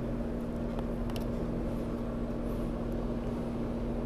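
Steady machine hum, a constant low drone with one even tone, with a few faint ticks about a second in.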